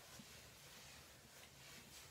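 Near silence: room tone with faint hiss and low hum.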